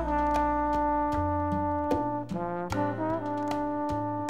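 Latin jazz recording: a brass section of trumpets and trombones plays held chords, with a short sliding figure about three seconds in, over a steady percussion beat of about two and a half strikes a second.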